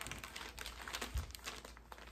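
Clear plastic zipper bag crinkling as a packet of markers is handled and lifted, with irregular crackles and a soft thump about a second in.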